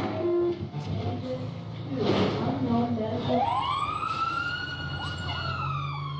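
Fire engine siren winding up about three seconds in: a wail that rises quickly in pitch, holds high and starts to fall near the end, over a steady low engine rumble. A short burst of noise comes about two seconds in, and music fades out in the first second.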